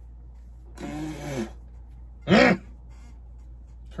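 Two short wordless vocal sounds from a person: a breathy one about a second in, then a louder, shorter one that rises and falls in pitch.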